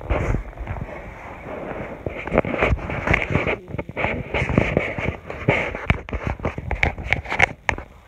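Loud rustling and crackling with many sharp knocks, thickest near the end, typical of a phone's microphone being jostled and rubbed while it is handled roughly.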